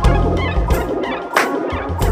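Live funk band playing: electric bass under a pitched midrange line, with sharp drum hits about every three-quarters of a second.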